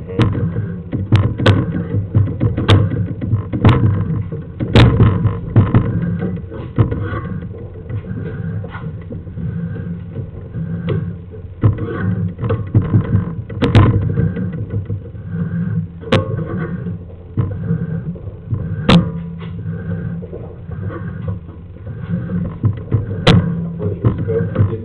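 Sewer inspection camera's push cable being drawn back in, with irregular clicks and knocks over a low, steady rumble.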